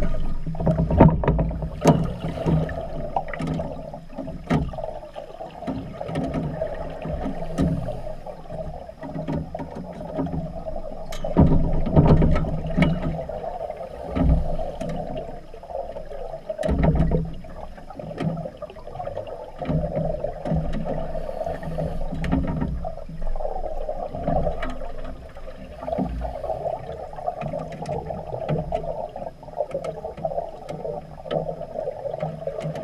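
Underwater pool sound from a scuba diver: regulator breathing with loud surges of exhaust bubbles every several seconds over a steady muffled hum, and scattered sharp clicks.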